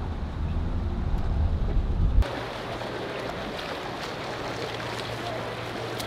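Low rumble of a car driving, which cuts off abruptly about two seconds in. It gives way to an outdoor pool: water splashing from a swimmer doing front crawl, over a faint steady low hum.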